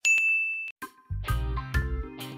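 A single bright ding, a chime-like sound effect that rings for just under a second and then cuts off. Background music with a heavy, pounding beat comes in about a second in.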